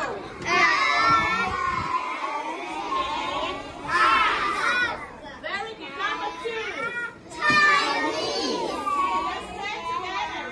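Many young children's voices at once, talking and reading aloud over one another, with louder swells now and then.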